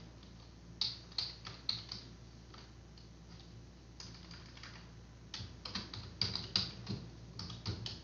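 Computer keyboard keystrokes, a few about a second in and a quicker run of them over the last three seconds, as a password is typed.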